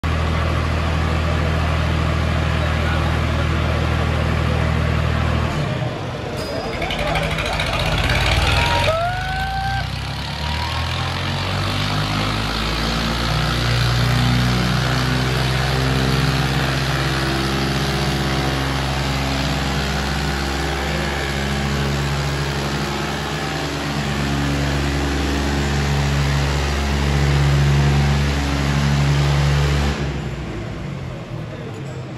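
Tractor diesel engines running hard as a Swaraj 855 and an Arjun 555 pull against each other, with crowd voices behind. The engine note dips about five seconds in, then comes back and holds steady with a slowly wavering pitch. A brief rising call sounds about nine seconds in.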